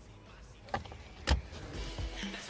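Car sounds: two sharp clunks about half a second apart, the second louder, over a low rumble.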